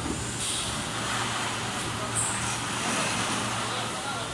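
Injection moulding machinery humming steadily on the factory floor, with two short hisses about half a second and two seconds in.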